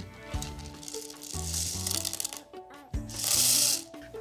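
Beads being poured from one plastic cup into another, a rattling hiss in two spells, the second louder near the end.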